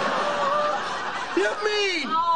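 Studio audience laughing together in a steady swell, with a voice cutting in near the end.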